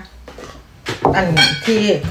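A ceramic plate clinks as it is handled and set on a table, followed by a woman talking.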